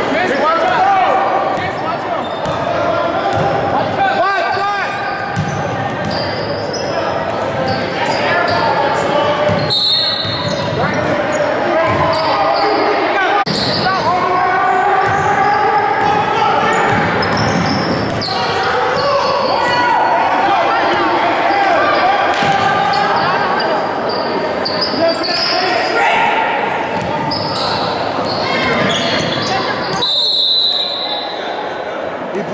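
Live basketball game sound in an echoing gym: many voices from players and spectators calling and shouting over one another, with a basketball dribbling on the hardwood floor.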